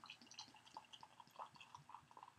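Belgian tripel ale being poured from a glass bottle into a wine glass: a faint run of small, irregular liquid plinks and bubbly pops.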